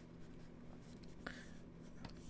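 Faint scratching of a stylus drawn across a drawing tablet's surface in short strokes, over a low steady hum.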